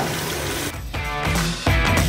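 A brief sizzle of mutton frying in oil in a steel pot, with the blended onion-tomato paste just added, fading out; then background music starts about a second in and grows louder near the end.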